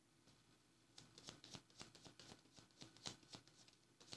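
A tarot deck being shuffled by hand: soft, quick clicking and riffling of cards that starts about a second in and keeps going.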